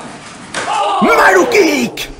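A wrestler's kick landing with a sharp smack about half a second in. It is followed by a man's loud, drawn-out shout that falls in pitch.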